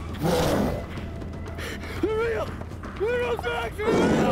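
A person's frightened, wordless vocal sounds: a gasping breath just after the start, then several short, high whimpering cries that bend in pitch, around the middle and again near the end.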